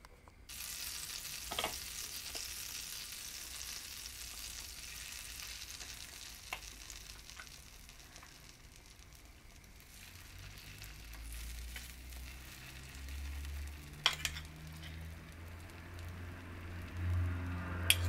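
Butter and a beaten egg mixture with shredded cabbage and carrot sizzling in a small rectangular nonstick pan. The sizzle starts suddenly about half a second in, and a few light clicks of a spoon and fork against the pan and bowl come through it.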